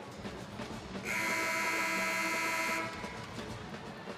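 Basketball arena horn sounding once, a steady buzzing blast of about two seconds starting about a second in, over arena music and crowd noise.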